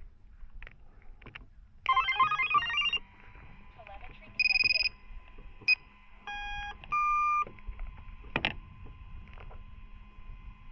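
Power-up beeps from an FPV wing's electronics just after its 6S flight battery is connected: a quick run of several notes about two seconds in, typical of a BLHeli_32 ESC playing its startup tune through the motor. Several single beeps at different pitches follow over the next few seconds, over a faint steady whine, and a sharp click comes near the end.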